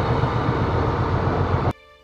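Diesel semi-truck engine and cab noise: a steady low rumble heard from inside the cab, cutting off suddenly near the end.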